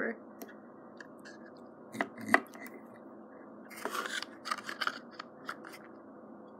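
Small plastic clicks and rubbing from a Mega Construx building-block dragon figure being handled and fitted onto its plastic display stand. Two sharp clicks come about two seconds in, then a run of lighter clicks and scraping around four to five seconds.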